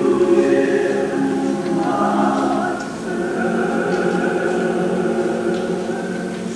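Church choir singing long, held chords.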